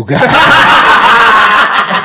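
Several men laughing loudly together, the laughter breaking out suddenly and carrying on without a break.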